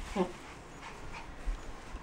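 A pet dog panting faintly, close to the microphone.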